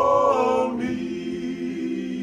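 Five men singing a hymn a cappella in close harmony. A higher phrase gives way, about a second in, to a lower chord held steady.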